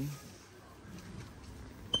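Quiet shop background with a short, high electronic beep just before the end.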